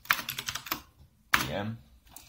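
Computer keyboard being typed on: a quick run of keystrokes for under a second, then one harder key click about a second and a half in.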